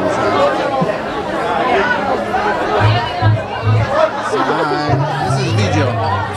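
People chatting over bar music, with a low bass line coming in about halfway through.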